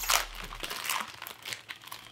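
Plastic food packaging crinkling as it is pulled open and handled: a run of irregular crackles, loudest just after the start.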